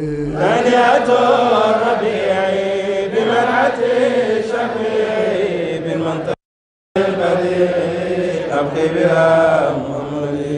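Men's voices chanting an Arabic Mawlid praise poem in a drawn-out, melodic recitation. The sound cuts out completely for about half a second a little past the middle.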